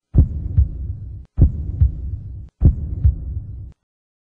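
Logo-outro sound effect: three heartbeat-like pairs of deep thumps, roughly one pair a second. Each pair sits over a low hum and cuts off sharply.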